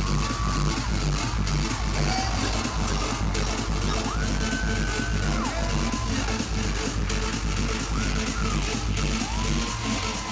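Loud live K-pop concert music with a steady heavy electronic bass beat, played through the venue's sound system and recorded from within the audience.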